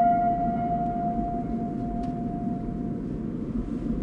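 A single ringing tone starts at the cut and fades away over about three seconds. Under it is the steady low road rumble of a moving car, heard from inside the cabin.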